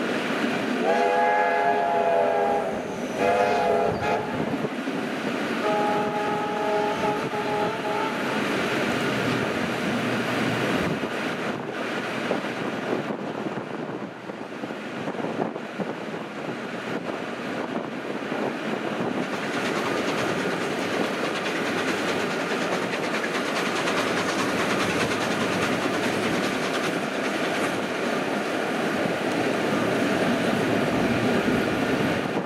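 Train whistles sounding: a blast of about two seconds, a short one, then a longer blast on a different chord about six seconds in. Underneath and afterwards, the steady running noise of trains under way, with rail clickety-clack.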